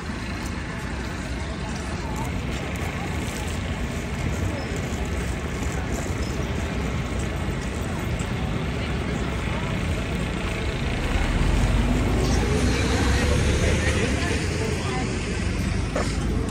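City road traffic on wet streets: a steady noise of passing cars and buses, with a deeper rumble from a vehicle growing louder about eleven seconds in.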